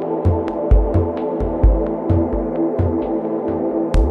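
Ambient electronic music: a sustained, layered synth drone with deep bass thumps that fall in pitch, a few a second at uneven spacing, and sparse sharp clicks over the top.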